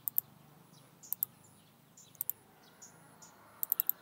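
Computer mouse clicking: three quick double-clicks about a second apart, then a fast run of four clicks near the end.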